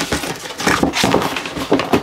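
Cardboard toy packaging being handled and opened by hand: a run of irregular scrapes, taps and rustles as the box is slid and worked open.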